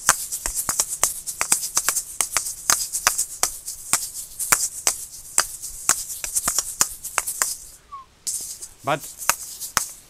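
Asalato played freely: the two seed-filled balls of each pair swing and click against each other in a quick improvised rhythm, about five clicks a second, with the seeds rattling. The playing breaks off about eight seconds in, and a few more clicks follow near the end.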